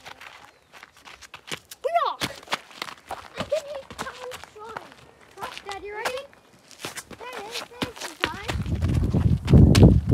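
Footsteps on a rocky dirt trail, a steady run of scuffs and steps, with voices calling between them. A loud low rumble comes in near the end.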